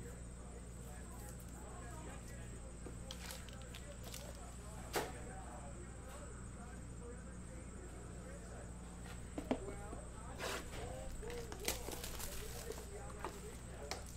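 Steady low electrical hum of the room, with faint voices in the background and a few light clicks and taps from cards and a cardboard box being handled, most of them in the second half.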